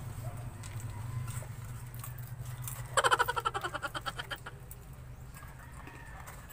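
A chicken calling once about three seconds in: a loud, rapidly pulsing call of about a second and a half that fades away, over a steady low hum.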